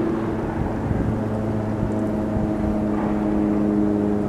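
A motorboat engine running steadily: a low, even hum at a constant pitch that grows clearer partway through.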